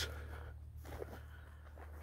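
Faint outdoor background with a steady low hum and no distinct event.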